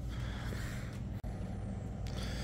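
Steady store background noise, a low hum under an even hiss, with a brief dropout about a second in.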